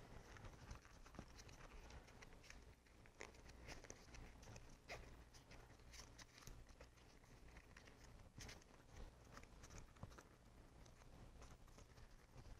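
Near silence, with faint scattered rustles and light scuffs as a foam insert is pushed into a rubber RC tire and worked around by hand.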